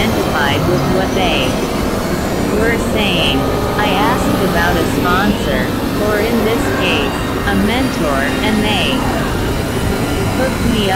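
Dense experimental electronic noise music: a steady rumbling, hissing bed of synthesizer drone with many short warbling, gliding tones and chirps rising and falling over it throughout.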